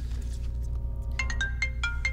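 Mobile phone ringtone: a quick run of short, plinking notes that starts about a second in, over a low steady hum.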